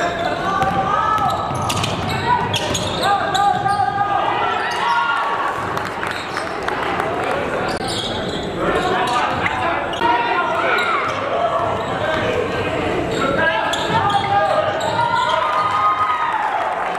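Basketball being dribbled on a hardwood gym floor, with shouting and chatter from players and spectators echoing through the gym.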